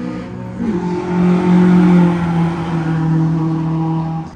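A car engine at high revs, typical of a time-attack car running on the circuit. Its note rises about half a second in, then holds steady and is loudest near the middle.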